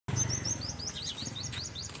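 A small songbird singing a rapid run of short, high, repeated chirps, several a second, over a low steady hum.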